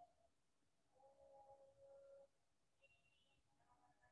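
Near silence: room tone, with a faint steady tone for about a second near the middle.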